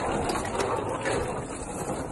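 Hard-shell suitcase wheels rolling over rough concrete, a steady rumble.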